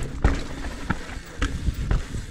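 Commencal Meta HT hardtail mountain bike rolling down a rough dirt trail: low tyre and wind rumble with sharp knocks and rattles from the bike over bumps, about four in two seconds.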